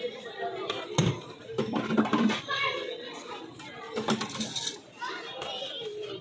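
Background voices in a busy street, cut by a few sharp clinks of a glass and spoon being handled on a stainless-steel counter, about one, two and four seconds in.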